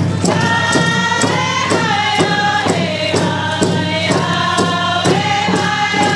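Several hand drums, rawhide frame drums struck with sticks, keep a steady even beat of about two and a half strokes a second. Over the drums a group of men and women sing together in unison, holding long notes that step downward.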